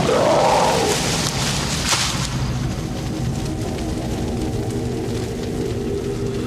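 Fighting male orangutans calling out, a short bending cry in the first second over rough noise, with a single thump near two seconds. Then sustained music with long held notes takes over.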